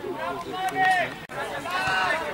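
Loud, high-pitched shouts from players' voices on an open football pitch: one shout peaks about a second in, the sound cuts off abruptly, and another shout follows near the end.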